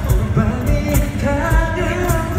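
Live acoustic pop band playing: sung vocals over regular cajon thumps, with acoustic guitar and bass guitar.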